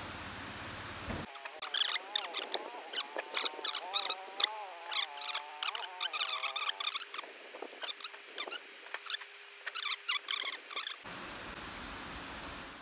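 Sped-up audio of lamb being worked onto a rotisserie spit by hand. It carries a dense run of rapid, squeaky clicks and a wavering high-pitched tone, starting about a second in and stopping abruptly about a second before the end.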